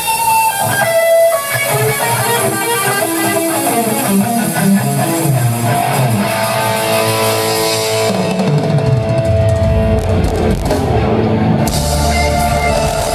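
Electric guitar played live through an amplifier, picking a melodic lead line with little else beneath it. Deep low notes join in about eight seconds in.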